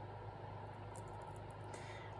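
Quiet room tone: a steady low hum under a faint hiss, with a few very faint high ticks about a second in.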